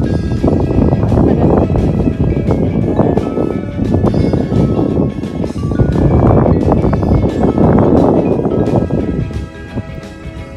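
Wind buffeting the phone's microphone in loud, uneven gusts that ease near the end, under background music with steady held notes.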